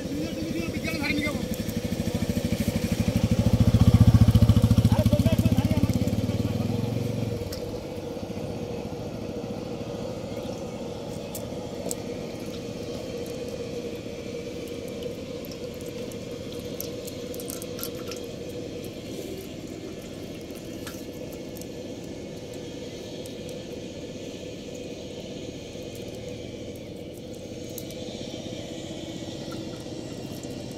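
A low rumble swells to its loudest about four seconds in and fades out a few seconds later. After that come light rustling and scattered soft clicks from a fishing net being picked over by hand, with small fish splashing in a shallow metal plate of water.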